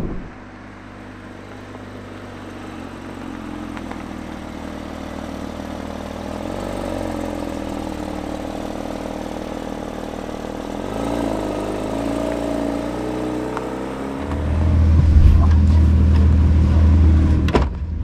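Porsche 992 GT3 RS's naturally aspirated flat-six running at a steady idle, fading in and slowly getting louder, with a couple of small changes in pitch. About two-thirds of the way through it becomes much louder and deeper.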